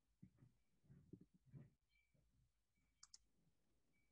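Near silence, with a few faint low bumps and a quick pair of computer mouse clicks about three seconds in.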